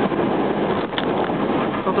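Steady road and wind noise inside a first-generation Honda Insight's cabin at expressway speed, with a short click about halfway through.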